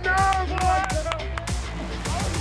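Background music: a steady beat with deep bass and a singing voice over it.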